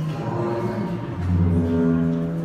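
Music of deep, held low notes, a slow drone whose pitch shifts about a second in.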